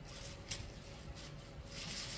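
Rustling of a shopping bag and clothes being handled, in two short spells, with a brief sharp click about half a second in.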